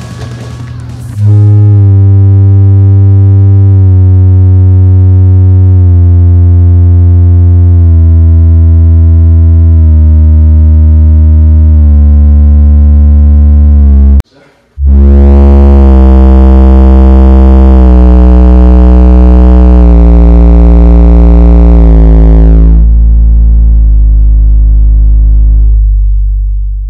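Background music: loud, sustained synthesizer chords over a heavy bass, the chords changing every couple of seconds. It cuts out for about half a second halfway through, comes back, and its top end fades away near the end.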